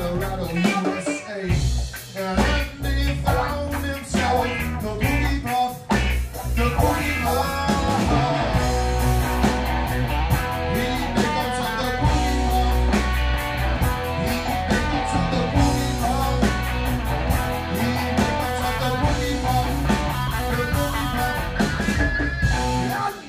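Live blues-rock band playing: electric guitar, electric bass and drum kit, with long held notes from a harmonica cupped against the vocal microphone, strongest through the middle of the passage.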